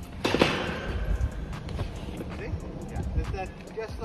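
Wind rumbling on the microphone outdoors, with a sudden loud burst a quarter second in. Short indistinct voices follow near the end.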